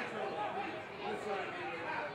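Several men's voices calling and shouting over one another on a rugby pitch, the overlapping calls of players around a ruck.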